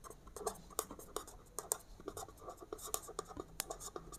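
A pen writing on paper: quick, irregular scratching strokes and small taps as a line of words is written out by hand.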